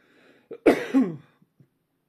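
A man coughs once, loud and harsh, about half a second to a second in, after a short breath in.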